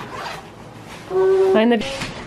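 Zipper on a padded jacket being worked, a faint rasping through the first second. About a second in, a person's voice holds one short note, louder than the zipper, followed by a brief bit of speech.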